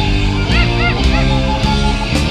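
Rock band playing loudly: electric guitar, bass guitar and drums. Between about half a second and a second and a quarter in come three short high squeals, each rising and then falling in pitch.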